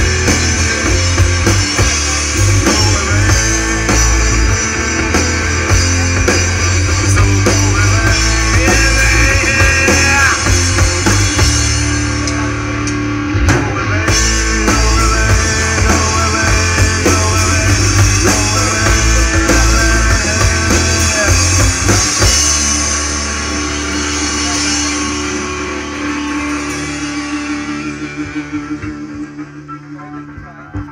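Live rock band playing an instrumental passage on electric guitars and drum kit. About 22 seconds in, the drums and low end stop, and the remaining held notes ring and fade as the song ends.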